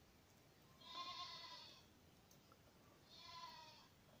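Two faint bleats from a farm animal, each about a second long, the first a little louder than the second.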